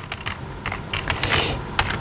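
Typing on a computer keyboard: an irregular run of key clicks as a line of code is entered.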